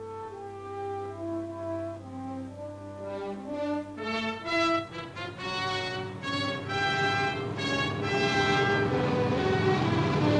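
Brass-led orchestral film score, with horns playing held notes that climb and swell. Near the end the drone of a B-17 Flying Fortress's engines rises under the music.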